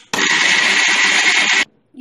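Electric mixer grinder with a stainless steel jar running at full speed, grinding cooked onion-tomato masala with a little water into a paste. It runs steadily for about a second and a half, then stops abruptly.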